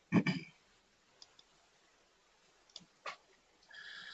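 Computer mouse clicks: a few faint, scattered clicks in a quiet room, with a short louder knock at the very start and a brief faint hiss near the end.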